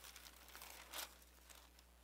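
Thin Bible pages being leafed through: faint paper rustles and swishes, the loudest about a second in, over a low steady hum.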